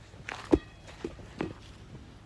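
Red inflatable rubber playground ball bouncing on grass and being caught: three soft dull thumps, the loudest about half a second in.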